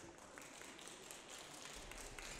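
Faint, scattered hand-clapping from a small audience, a light patter of irregular claps.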